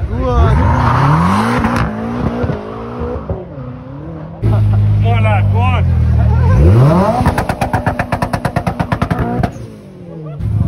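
Car engines being revved hard in bursts. The engine pitch sweeps up in the first second or two, and after a sudden cut a second engine revs up and then stutters rapidly at about a dozen pulses a second, like bouncing off the rev limiter, before dropping away near the end. Crowd voices and shouts sit underneath.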